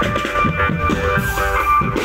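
Loud parade music: a marching drum band's drums beating steadily under a melody, played along with a loudspeaker sound system.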